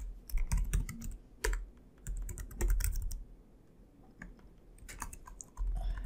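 Typing on a computer keyboard: short runs of quick keystrokes broken by brief pauses, with a quieter stretch of about a second before a few more keystrokes near the end.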